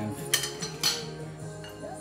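Two sharp clinks of a metal utensil against a glass mixing bowl, about half a second apart, over steady background music.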